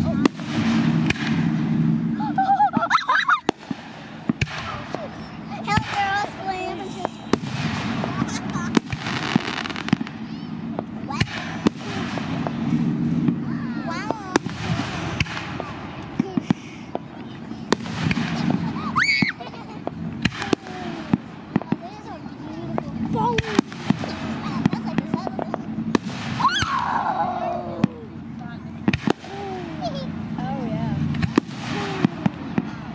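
Fireworks display: a rapid, irregular series of sharp bangs and cracks from shells bursting, with no long gap between them.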